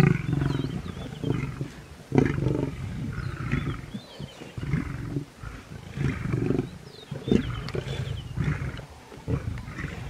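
Lions growling repeatedly while feeding on a kudu carcass: low rumbling growls that come and go every second or so as the males and cubs jostle over the kill.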